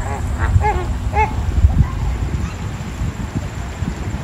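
A flock of flamingos honking: about four short, arched calls in the first second and a half, with a few fainter ones after.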